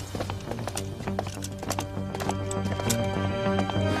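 Hard boot heels of several people walking on stone paving, a quick run of sharp steps, over background music of sustained low notes that grows louder.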